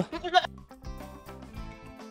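A goat bleats once, briefly, at the start. Background music follows.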